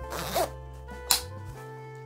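Front zipper of a life vest being zipped up, a short rasp, followed about a second in by a brief sharp sound, over background music.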